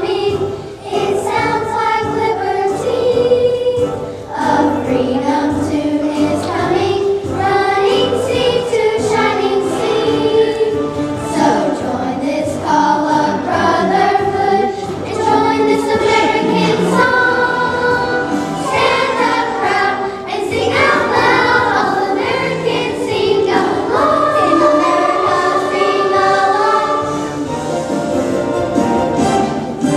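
Children's choir singing a song, sustained sung phrases with a couple of short breaths between lines.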